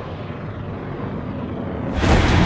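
Trailer sound design: a steady low rumble with a slow falling whoosh over it.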